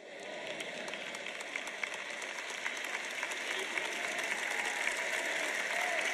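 A large audience applauding, the clapping building steadily louder.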